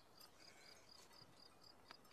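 Faint cricket chirping in a steady rhythm of about four chirps a second.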